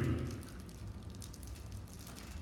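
A man's voice trailing off at the very start, then a pause filled with the steady low hum of a large room and faint scattered ticks and rustles.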